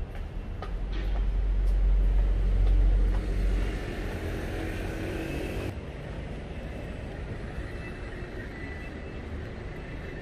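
Street traffic, with a deep low rumble that swells about a second in and dies away by about four seconds, as of a heavy vehicle passing, then a steady traffic hum.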